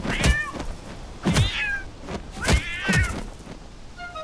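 A domestic cat meowing three times, about a second apart, each meow falling in pitch at its end and starting with a quick swishing sweep.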